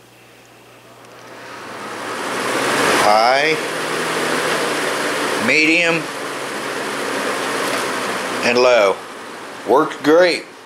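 Old metal box fan switched on with its knob: the motor and blades spin up over a couple of seconds to a steady rush of air with a low motor hum, then the air noise drops off about nine seconds in as the knob is turned back.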